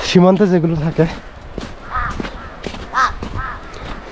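A man's voice briefly at the start, then a crow cawing several times, about two and three seconds in.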